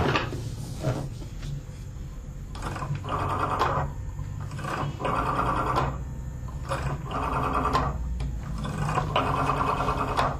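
Desk telephone's rotary dial being turned and whirring back, four spins of about a second each with short pauses between, over a low steady hum.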